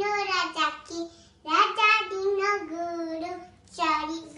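A young girl chanting a Sindhi nursery rhyme in a high, singsong voice, unaccompanied, in short phrases with held notes.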